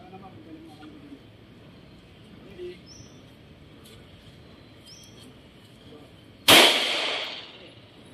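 A single handgun shot about six and a half seconds in, sharp and loud, with about a second of echo dying away after it.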